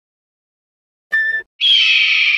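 A bird of prey screeching: a short call about a second in, then a long scream that falls slightly in pitch.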